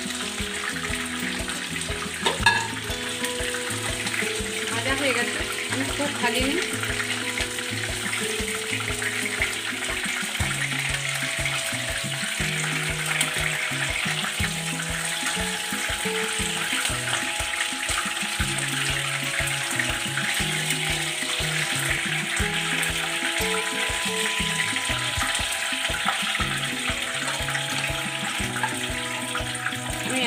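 Chicken pieces sizzling steadily as they fry in hot oil in a nonstick pan, with one sharp knock about two and a half seconds in. Background music with steady low notes plays along.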